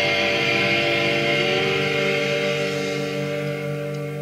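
Rock band's final chord, with guitar prominent, held and slowly fading at the end of a song.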